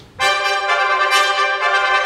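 An orchestra's brass section, led by trumpets, comes in together on the downbeat just after a spoken count-in, playing a loud held chord.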